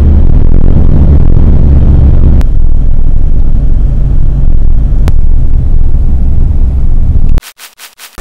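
Loud, steady low rumble of a moving road vehicle, with single clicks about two and a half and five seconds in. The rumble cuts off suddenly near the end, followed by a few short clicks.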